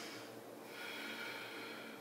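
Faint human breathing: one soft breath that swells about half a second in and fades before the end.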